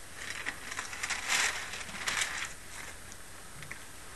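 Paper pages being turned to look up a Bible passage: rustling and crinkling for about two and a half seconds, then a couple of faint clicks.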